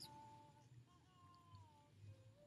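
Near silence, with two faint drawn-out high tones: one at the start and a longer, slightly wavering one from about a second in.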